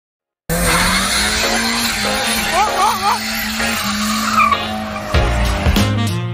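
A car running at high revs with its tyres squealing and skidding, as in a burnout or drift. Music comes in about five seconds in.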